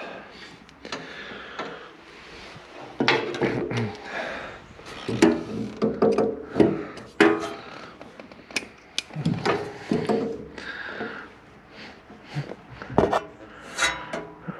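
Hand tools and metal fittings clinking, scraping and rubbing as water-pump pliers are worked among hydraulic hoses and fittings, with irregular knocks throughout.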